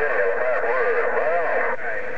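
President HR2510 radio receiving on 27.085 MHz: a steady hiss of static from the speaker with a distant station's voice coming through it faintly and garbled.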